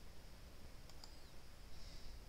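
Low room hum with a couple of faint computer mouse clicks about a second in.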